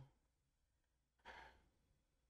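Near silence, broken about a second in by one short, soft breathy sigh from a person.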